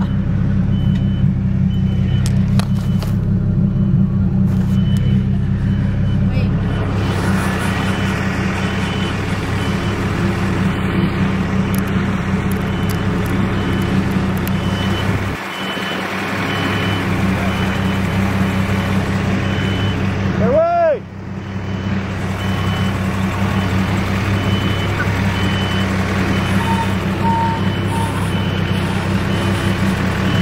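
Tractor engine running steadily while it tows a disabled car on a chain, with a regular high beep repeating through most of it.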